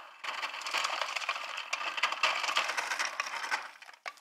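Refrigerator door ice dispenser dropping crushed ice into a styrofoam cup: a dense, continuous clatter that starts just after the beginning and stops shortly before the end.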